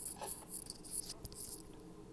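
Faint scratchy brushing of a dip-powder base-gel brush stroked across a nail tip, strongest in the first second, over a low steady hum.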